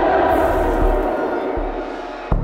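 Music with a low pulse, and a crowd of young men shouting and cheering over it, the crowd fading out near the end.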